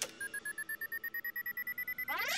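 Handheld electronic tester beeping rapidly, about ten short, even beeps a second, its pitch creeping slowly upward: a warning signal that the soil it is pushed into is contaminated.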